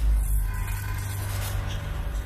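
Dramatic trailer score: a deep booming hit right at the start, fading into a steady low drone.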